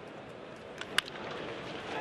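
Bat striking a pitched baseball: one sharp crack about a second in, over a steady murmur of the ballpark crowd, which swells slightly after the hit.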